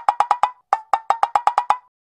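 Rapid wood-block knocks, about eight a second, with a short break about half a second in, stopping just before the end; a dubbed-in sound effect with no background sound under it.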